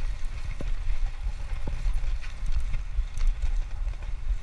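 Wind buffeting the camera microphone and tyre rumble from a road bike being ridden over a concrete path, a gusty low rumble, with two light clicks from the bike about a second apart.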